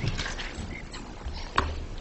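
Low room rumble with faint shuffling knocks and one sharp knock about one and a half seconds in.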